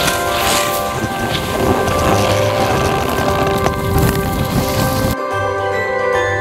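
Rushing noise of a fast downhill ski run, picked up by the skier's own camera, over background music; the rushing cuts off suddenly about five seconds in, leaving the music alone.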